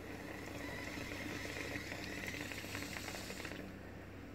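A steady hiss that stops about three and a half seconds in, over a low, steady electrical hum.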